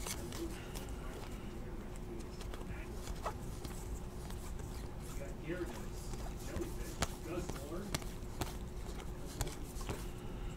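Faint, soft clicks and rustling of glossy trading cards being flipped through by hand, a few sharper ticks among them, over a faint steady hum.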